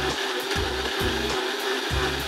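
Countertop blender running steadily at speed, blending a smoothie of frozen blueberries and ice. A regular low beat runs under it.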